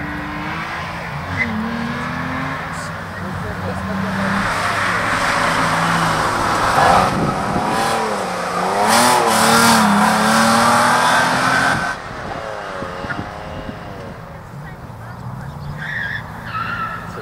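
Nissan R32 Skyline being driven hard through an autocross course: engine revving up and down with tyres squealing as the car slides through the cones. It is loudest in the middle, then drops off suddenly about twelve seconds in.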